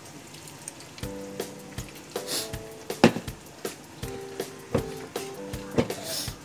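A spatula scraping and knocking against a nonstick frying pan in quick strokes as chicken is stirred in soy sauce, over faint sizzling. Background music starts about a second in.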